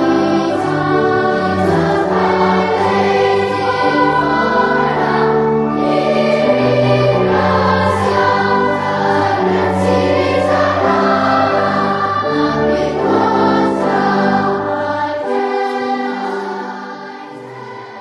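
Choir singing a hymn in sustained chords, the lowest parts dropping out about fifteen seconds in and the music fading away near the end.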